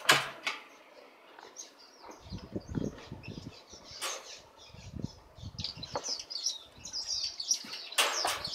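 Aviary finches chirping in short high calls, sparse at first and much busier near the end. A few sharp knocks and some low rumbling break in.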